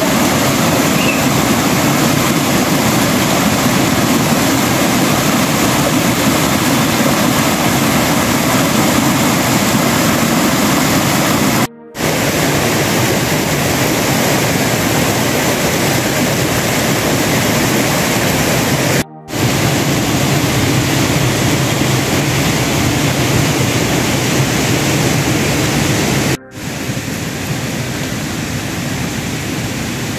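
Loud, steady rush of a mountain stream tumbling over rocks, broken off briefly three times and a little quieter near the end.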